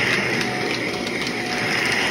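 Upright bagless vacuum cleaner running steadily as it is pushed over carpet, a loud even whirring with a few faint clicks.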